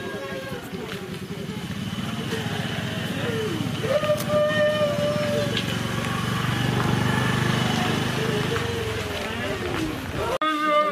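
An engine running close by, a low steady rumble that swells to its loudest about two-thirds of the way in and eases near the end, with scattered voices over it.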